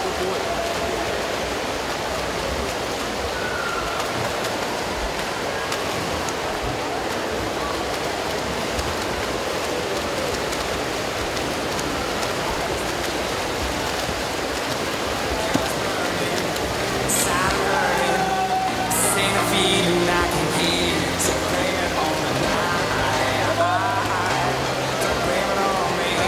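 Steady wash of swimming-pool noise: swimmers splashing through freestyle strokes with a murmur from the pool hall. About two-thirds of the way in, music with held notes starts up and plays over it.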